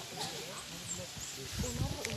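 Several people talking and calling out over one another at once. A low bump sounds near the end.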